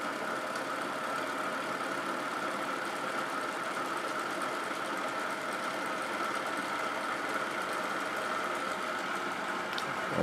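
Motor-driven 1.5 kg rotor spinning steadily at about 1100 RPM: an even whir with a constant high whine in it.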